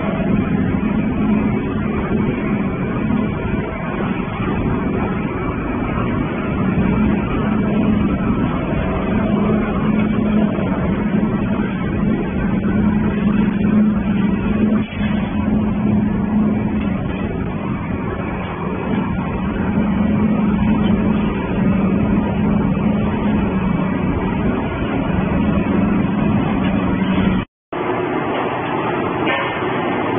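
Industrial shredding line running: a steady, loud machine drone with a constant low hum from shredder and conveyor motors. It cuts out for a moment near the end, then similar machine noise carries on.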